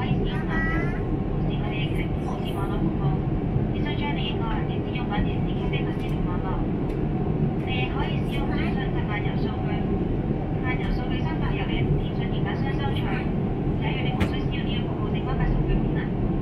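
Steady low cabin roar inside an Airbus A350 in flight, the noise of its Rolls-Royce Trent XWB engines and rushing air, with indistinct voices talking over it.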